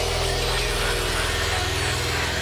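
Electronic psytrance/hardcore music: a steady, buzzing low synth drone pulsing very fast, with no drum beat.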